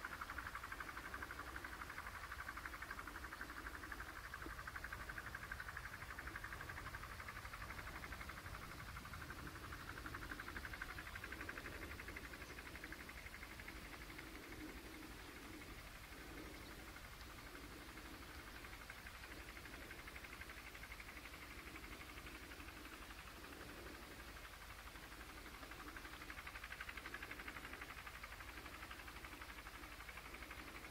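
Faint outdoor field recording of upland farmland, played back over a video call: a steady hiss with soft, irregular low sounds coming and going.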